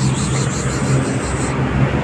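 A steady low mechanical hum under outdoor background noise, with a high hiss that stops about one and a half seconds in.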